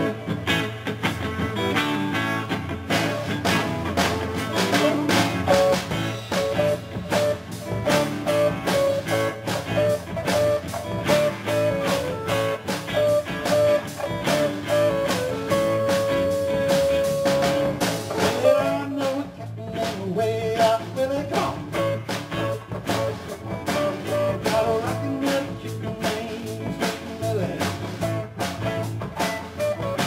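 Live band playing a song: electric guitars, bass guitar and a drum kit keeping a steady beat, with a long held guitar-range note about halfway through.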